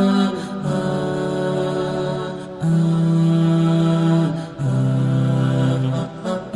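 Calm vocals-only nasheed: voices hold long, steady notes with no instruments, moving to a new pitch every second or two.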